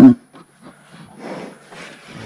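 A man's voice cuts off at the very start. Then come faint knocks and rustling from cattle being handled in a wooden chute.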